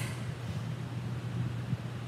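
Steady low hum with faint even hiss: background room tone, with no other sound standing out.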